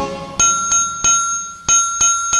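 The band and singing stop at the start, leaving a bright, high bell struck about five times in an uneven series. Each strike rings on and fades before the next.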